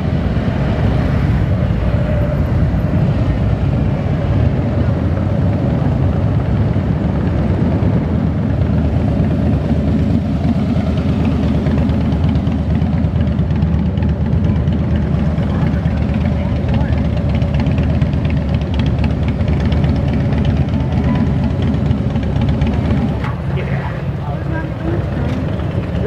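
Big V-twin touring motorcycle engines running with a loud, steady low rumble as bikes ride past and pull away. The rumble eases somewhat near the end.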